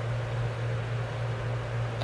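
Steady low hum with a constant hiss of background noise, with nothing else standing out.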